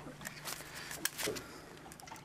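Scattered faint clicks and ticks of metal pliers working a hook free from a small gummy shark's mouth, over a faint steady low hum.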